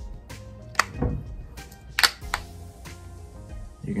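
Soft background music, with a few sharp clicks and taps from a glass perfume bottle and its cap being handled, the two loudest about one and two seconds in.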